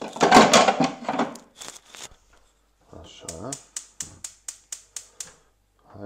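Gas hob burner igniter clicking rapidly and evenly, about four or five clicks a second for some two seconds, as the burner is lit under the pan. A man's voice is heard before it.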